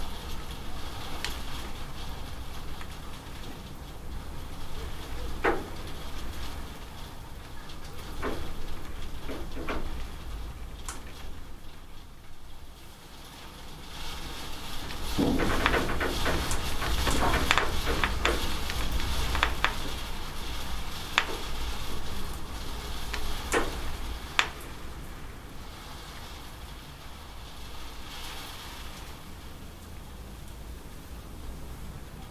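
Rain falling and dripping off a roof edge: a steady hiss with scattered sharp drop splashes, which come thick and loud about halfway through before thinning out again.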